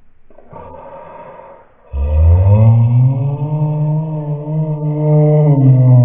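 A deep, sustained electronic drone from the effects-altered logo soundtrack. It starts loud about two seconds in after a faint, quieter stretch, and its pitch bends slowly up and then down.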